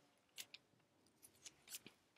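Near silence broken by a few faint, short clicks and light rustles of handling noise, scattered through the two seconds.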